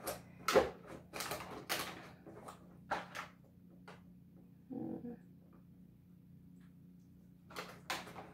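Plastic toy packaging being handled: a quick run of rustles and knocks as a plastic-wrapped insert is worked inside a hard plastic container, then a quieter stretch with a few more rustles near the end.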